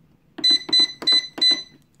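Four short electronic beeps from the keypad of a digital price-computing scale, about a third of a second apart, as a price per kilo is keyed in.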